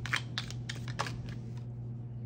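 A deck of round oracle cards being shuffled by hand: a quick run of about seven crisp card clicks in the first second, then quieter handling. A low steady hum runs underneath.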